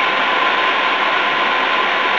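Steady hiss of room and recording noise with a faint steady hum underneath; no distinct event.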